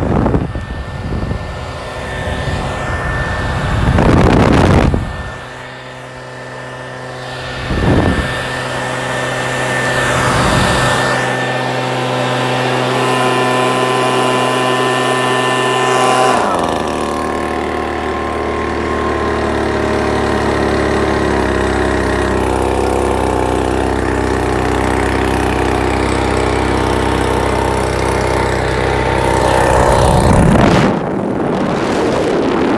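Echo PB-2620 handheld leaf blower's small two-stroke engine running steadily, with a few loud rushes of air over the microphone in the first third. A little past halfway its note shifts, a lower tone coming in under it.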